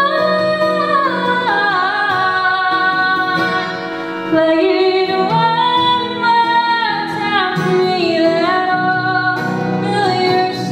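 A woman singing with her own acoustic guitar accompaniment, in long held notes that slide from pitch to pitch.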